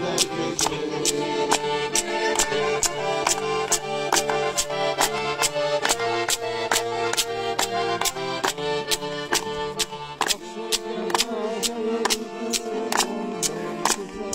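Circassian button accordion (pshine) playing a dance tune in sustained chords and melody, kept in time by a brisk, even beat of sharp clacks from wooden pkhachich clappers and hand claps.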